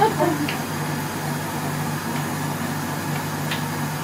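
Food processor motor running steadily, blending cake batter in its bowl.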